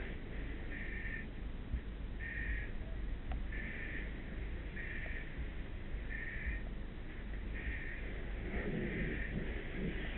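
An alarm beeping: a short, high tone repeating about once every second and a quarter, over a steady low rumble.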